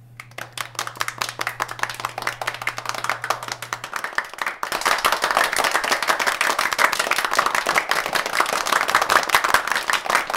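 Audience clapping and applauding, growing louder about halfway through. A low steady hum sounds underneath and stops about four seconds in.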